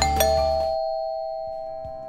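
Doorbell chime ringing a two-note ding-dong: two strikes about a fifth of a second apart, which ring on and fade slowly.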